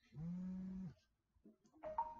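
A man's voice holding one even-pitched hum for under a second, then quiet.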